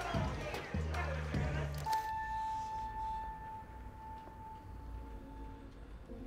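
Music: a bass-heavy beat under voices for about two seconds, then a single held electronic note that slowly fades out.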